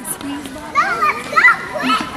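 Young children playing: high-pitched wordless vocalizing and squeals, rising and falling in pitch.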